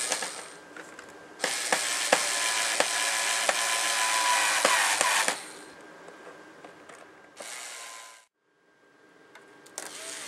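Small cordless electric screwdriver driving the screws that bolt the wing to the fuselage, running in bursts: a brief run at the start, a long run of about four seconds with scattered clicks, and a short run near the end that is cut off suddenly.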